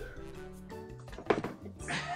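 Quiet background music with held tones, and a single sharp knock about a second and a half in as a tossed ball hits the cardboard game box.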